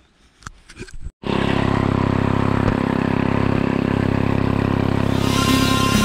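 Stihl FS 310 brushcutter's two-stroke engine running steadily at speed, cutting in abruptly about a second in. Electronic music fades in near the end.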